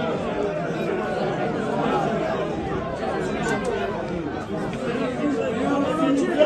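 Several people's voices talking over one another in excited chatter, with no single voice standing out.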